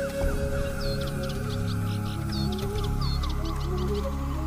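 Background music: slow sustained tones with a gently stepping melody, with short, high, bird-like chirps repeating over it.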